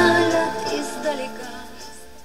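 Music with singing from a Belarus-59 tube radiogram's loudspeakers, fading steadily as its volume knob is turned down. There is no crackle or scratch as the knob turns: the volume control is clean.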